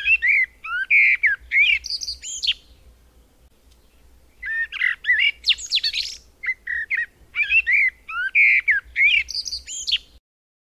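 A songbird singing in quick varied phrases of chirps and whistled notes, with a pause of about two seconds midway before the song resumes.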